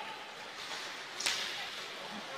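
Ice rink sound from the game: the faint hiss of skate blades on the ice, with one sharp scrape or stick clack a little past halfway.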